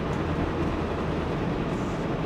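Kenworth semi-truck cruising at highway speed, heard from inside the cab: a steady low engine drone with road and wind noise.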